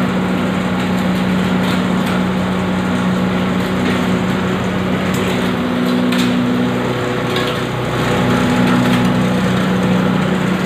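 Industrial zinc and aluminium grinding machine (pulverizer) running: a loud, steady mechanical drone with a low hum over dense noise and faint scattered ticks. The hum dips briefly and shifts slightly in pitch near eight seconds in, then carries on a little louder.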